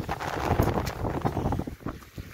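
Wind buffeting the microphone as a low rumble, with a run of short footstep-like knocks on sand and shingle; the rumble drops away near the end.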